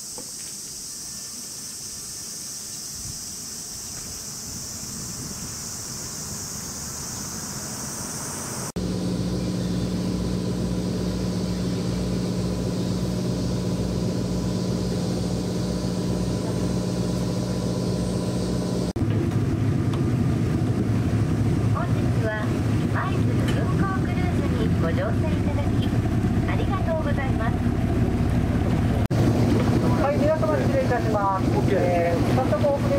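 A boat's engine running with a steady low hum, joined about two-thirds of the way through by wind and wavering voice-like sounds over it. Before the engine comes in, a quieter steady high-pitched hiss.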